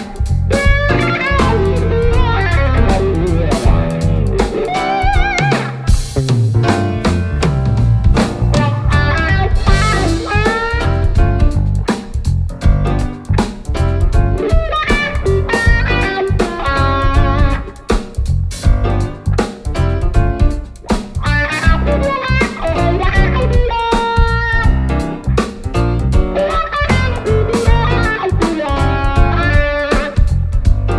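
Instrumental blues-funk band playing a groove: electric guitar carrying a melody with bent, wavering notes over grand piano, electric bass and drum kit.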